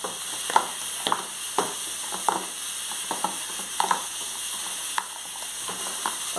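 Chicken pieces sizzling as they fry in a pan, stirred with a utensil that clacks against the pan again and again, about once or twice a second.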